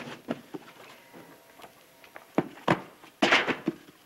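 Handling noise on a table: scattered light knocks and thuds as a book and other objects are picked up and set down, with a louder half-second noise a little after three seconds in.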